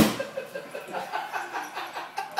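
A sledgehammer strikes a drywall wall once, right at the start: a single sharp bang that rings briefly in the room and dies away.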